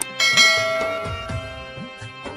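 A bright bell-like chime strikes once just after the start and rings on, slowly fading, over background music with a soft rhythmic drum beat.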